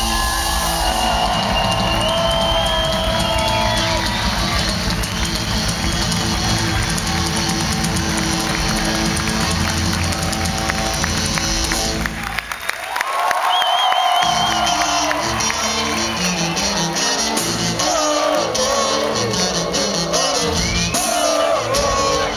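Live rock music played on amplified cellos with a drum kit, with the audience cheering. About halfway through, the drums and low end drop out for a moment, then the full band comes back in.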